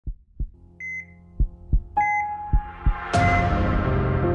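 Intro sound design: a heartbeat of deep double thumps, three beats in all, with short electronic monitor beeps in pairs. About three seconds in, a swell of sustained synth music rises in.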